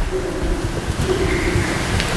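Steady rushing noise, like wind or surf, with a faint wavering hum underneath, from a video's soundtrack played over a church's loudspeakers.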